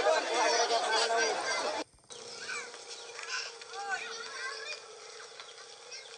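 Several people talking over one another, played back from an old home videotape. Just before the two-second mark the sound cuts out briefly. After that the voices are fewer and quieter, over a steady hum.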